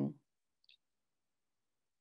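A woman's voice trailing off at the start, then near silence on a remote call line, broken only by one faint brief click less than a second in.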